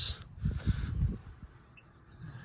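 A low, irregular rumble on the microphone through the first second, then near quiet.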